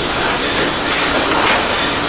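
Pan of vegetables sizzling in butter and stock on a busy kitchen range, a steady hiss.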